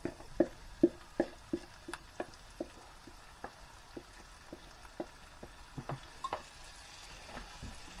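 Marinated chickpeas being scraped from a bowl into a hot frying pan: irregular light knocks and taps of the spoon against the bowl and pan, a few a second, over a faint sizzle of the food in the pan.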